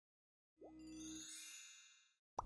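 A short chime sound effect: a quick upward swoop, then a ringing ding with bright overtones that fades away, starting about half a second in.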